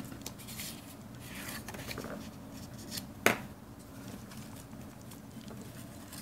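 Paper and cardstock being handled and slid on a wooden table as a paper panel is laid onto a card: soft, faint rustling with small clicks, and one sharper tap about three seconds in.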